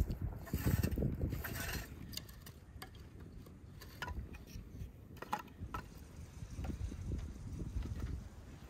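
Small split pieces of kindling wood knocking and clicking together as they are stacked into a fire lay, a scattering of separate sharp knocks from about two seconds in. A louder low rumbling noise fills the first two seconds.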